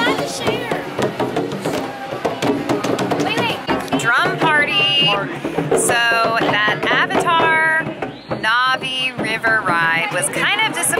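Children striking hand drums, a quick, uneven run of hits. About four seconds in, a woman's voice takes over.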